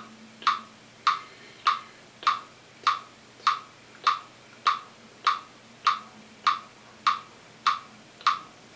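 Metronome clicking steadily at 100 beats per minute, a little under two clicks a second.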